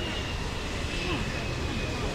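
Outdoor ambience: a steady low rumble with faint, indistinct voices in the background.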